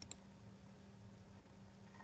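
Two faint computer mouse clicks in quick succession right at the start, then near silence with a faint low steady hum.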